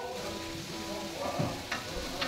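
Carrots and onions sautéing in a large pot, a faint steady sizzle, under background music with held notes.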